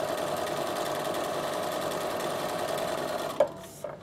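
Bernina sewing machine running steadily, sewing a straight stitch along a fabric edge, then stopping with a click about three and a half seconds in.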